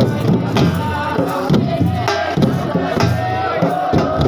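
Siddi dhamal music: a crowd of men chanting together loudly over drum beats coming about two a second.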